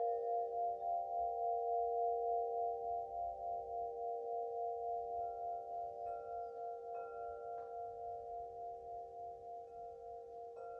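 Singing bowl ringing with several pitches at once, in a steady wavering pulse of about two beats a second, slowly fading. About halfway through, a higher note joins in, with a few light taps.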